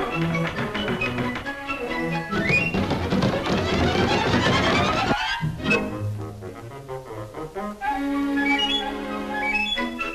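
Orchestral cartoon score with strings. A dense rising sweep starts about two seconds in and cuts off suddenly about five seconds in; a climbing run of notes follows near the end.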